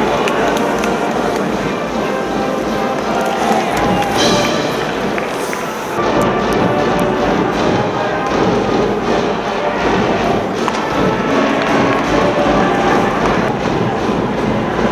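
Stadium crowd noise with band music and cheering from the stands, loud and continuous, changing abruptly about six seconds in.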